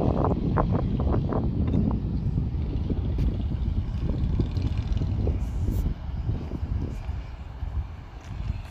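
Wind buffeting the microphone: a loud, irregular low rumble, gustiest in the first two seconds and easing somewhat after about six seconds.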